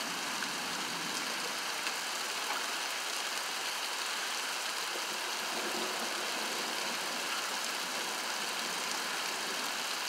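Heavy rain falling steadily: an even, continuous hiss of a downpour with no breaks.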